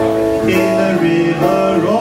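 Live jazz band playing a swing dance number, with double bass, drum kit and keyboard, held melody notes sounding over the rhythm section.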